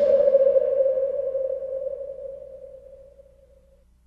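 A single held note at one steady pitch, ringing and slowly fading until it dies away near the end: the last note of a heavy metal song.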